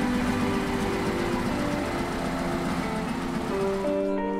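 Soft background music over the running engine of a vintage Volkswagen Combi van, a rough low rumble that dies away near the end.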